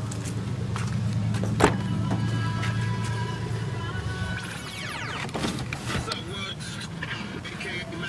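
A car's rear passenger door is unlatched with a click and swung open a few seconds later, with a few more clicks and knocks as it opens. Under it runs a steady low hum that fades out partway through.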